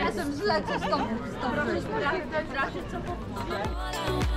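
Several voices chatting at once, with no clear words. Background music with a heavy beat comes in near the end.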